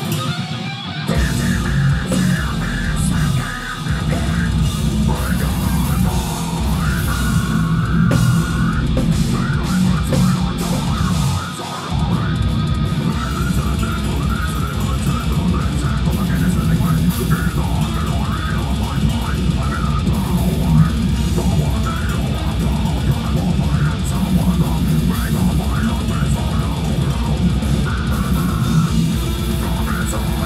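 Death metal band playing live at full volume: distorted electric guitars over a drum kit. The full band comes in about a second in, with brief breaks about three and a half and twelve seconds in.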